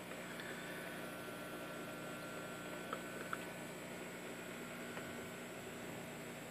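Quiet, steady low hum with a faint even hiss, and two faint ticks about three seconds in.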